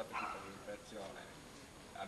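A man's voice speaking through a handheld microphone in short, broken phrases.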